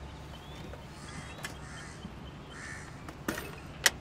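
Crows cawing several times, with two sharp clicks near the end, the second of them the loudest sound.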